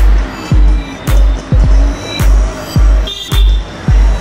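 Background music with a heavy, pitch-dropping bass kick on every beat, a little under two beats a second, and a sharp hit on every other beat.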